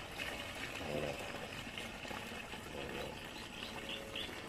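Water pouring steadily from a plastic jug into the open tank of a metal knapsack sprayer, splashing into the water already inside as the sprayer is filled for mixing herbicide.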